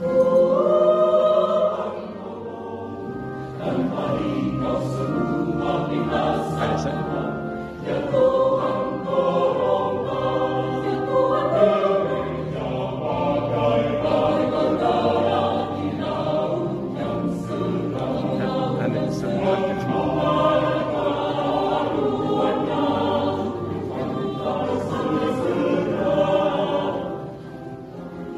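Mixed choir of men's and women's voices singing a sacred choral piece in several parts, with long held, swelling notes; the singing falls away about a second before the end.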